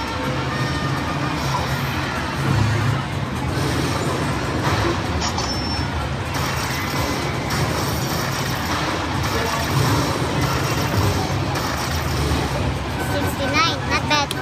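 Casino floor din: slot machine music and jingles over background voices and a low hum. Near the end the slot machine plays its bright win-celebration sounds as the bonus win is paid.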